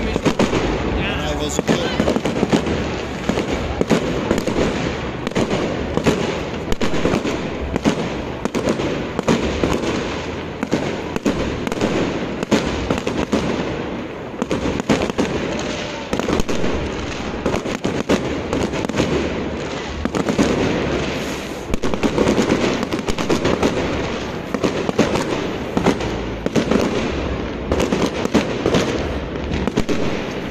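Fireworks going off without a break: a dense, irregular run of bangs and crackles, with people's voices underneath.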